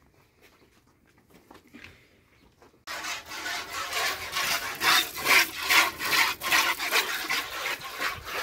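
A cow being milked by hand: streams of milk squirt rhythmically into a metal bucket, about two to three squirts a second. They start suddenly about three seconds in, after a quiet stretch.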